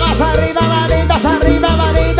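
Live cumbia band playing an instrumental passage: a lead melody with bending, sliding notes over a pulsing electric bass and drum beat.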